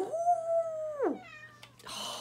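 Domestic cat meowing: one long call of about a second that drops away at the end, then a shorter, higher call that falls in pitch.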